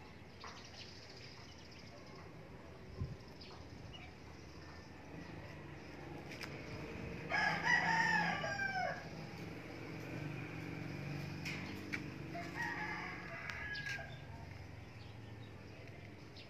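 A rooster crowing twice: a loud crow about seven seconds in and a fainter one near the end, over a low steady hum.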